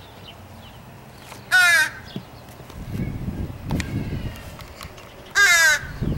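Crow cawing twice, single loud caws about a second and a half in and again near the end, calls the man takes as demands for food.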